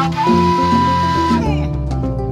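Live Mande music from an ensemble of kora, violin, guitar and hand drums, with a high note held for about a second that then bends downward.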